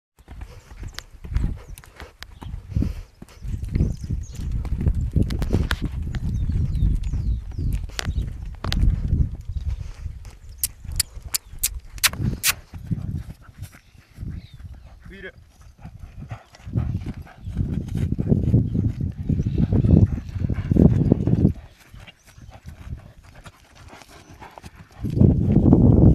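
Hoofbeats of a young horse cantering, first loose on sand and then under a rider on grass. About halfway through comes a quick run of sharp clicks.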